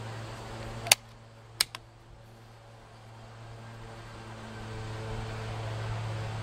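Unsuppressed Umarex Gauntlet .30-calibre PCP air rifle firing a single shot, a sharp crack about a second in, followed by two fainter clicks more than half a second later. A steady low mechanical hum runs underneath.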